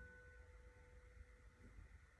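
Near silence, with a held grand piano chord fading away during the first second or so.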